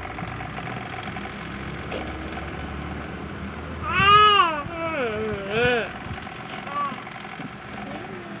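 A baby cooing and squealing in a few drawn-out, high-pitched sounds that rise and fall in pitch, starting about halfway through, over a steady low background hum.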